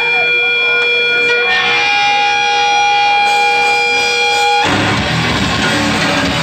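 Live hardcore band opening a song: amplified electric guitar holds ringing notes, then the full band comes in loud and distorted near the end.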